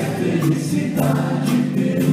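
Live rock band music in a theatre, heard from the audience seats: long held chords carrying through a pause between sung lines.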